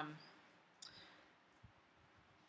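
Near silence: room tone, with the tail of a spoken 'um' at the very start and a single faint click a little under a second in.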